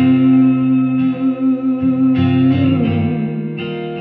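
Live song: an acoustic guitar strummed in steady chords under a long held male sung note that ends a little under three seconds in.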